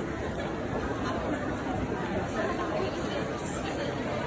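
Indistinct chatter of many shoppers, overlapping voices that hold steady, in a busy department store's open atrium.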